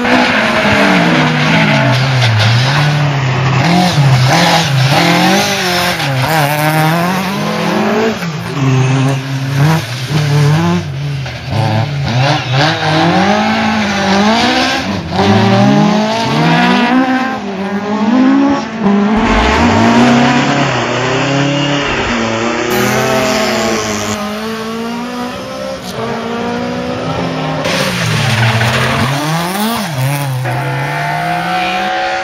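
Rally car engine revving hard, its pitch climbing and dropping again and again as it accelerates, changes gear and brakes, with tyre squeal through the corners.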